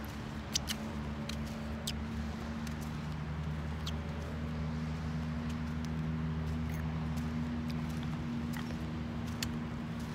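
A steady low engine hum, holding a few even tones that swell slightly midway, with scattered small sharp clicks over it.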